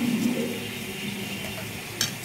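Prawn curry in a thick coconut-cashew gravy simmering in a pan, a steady bubbling hiss as it boils with the sugar just added.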